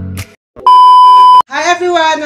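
A single loud electronic beep, one steady high tone lasting under a second, cutting off suddenly; the sound of a censor-style bleep or edit tone.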